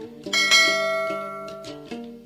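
A bell chime rings out about a third of a second in and fades away over about a second and a half, over light plucked-string background music.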